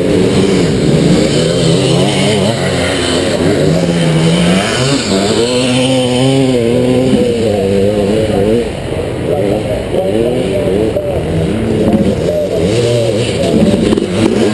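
1981 Can-Am MX-6B 400's single-cylinder two-stroke engine under racing load, its pitch rising and falling again and again as the throttle is worked through the gears.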